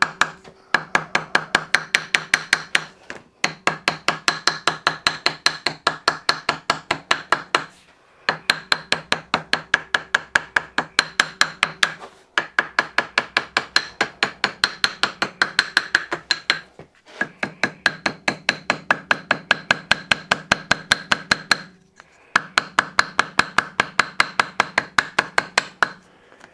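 Small ball-pein paint hammer tapping rapidly on 0.8 mm oil-resistant gasket paper laid over a metal crankcase cover, cutting out a paper joint against the cover's edge. The taps come several a second with a slight metallic ring, in runs of a few seconds separated by brief pauses.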